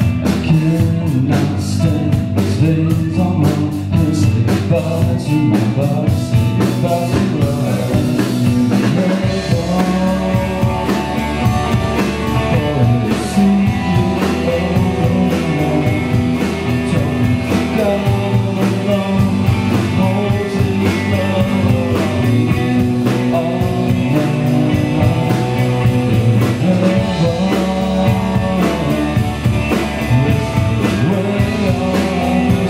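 Live band playing: electric guitar, bass guitar and drum kit, with a man singing. The cymbals are heavy for the first nine seconds or so, then thin out under the guitar and voice.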